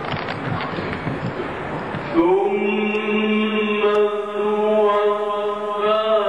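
A noisy mix of audience voices for about two seconds, then a Quran reciter's voice takes up a long, steady held note of melodic (mujawwad-style) recitation through a microphone.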